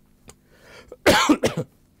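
A person coughs twice in quick succession, about a second in.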